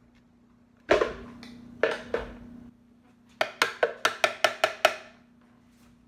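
A high-speed blender's plastic jar is handled after blending. It is lifted off the motor base with a sharp clunk about a second in and another two seconds in, then gives a quick run of about eight sharp knocks in under two seconds.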